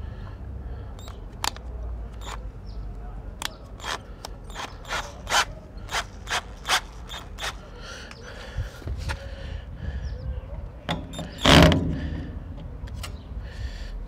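Keyless chuck of a cordless drill being twisted by hand to change the drill bit: a run of sharp separate clicks, then a louder rasping burst near the end. Low wind rumble on the microphone underneath.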